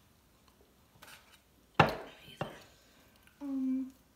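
An aluminium soda can set down on the table with one sharp knock, followed by a second lighter knock about half a second later. Near the end, a short hummed "mm".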